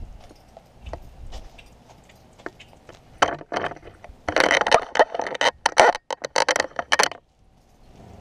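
Close handling noise from a small action camera being picked up and moved: dense rustling and clattering with sharp clicks from about three seconds in, cutting out briefly near the end.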